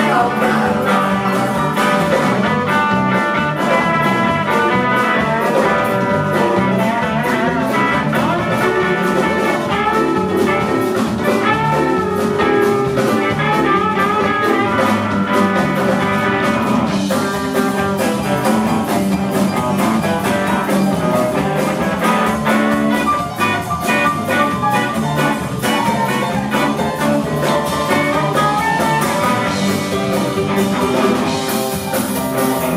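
Live blues band playing an instrumental break with no lead vocal: electric guitar, electric bass, organ-style keyboard and drum kit. Long held notes lead the first half, and the playing turns choppier and more strummed about halfway through.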